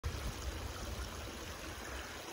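Steady hiss of shallow creek water trickling, with a low rumble underneath.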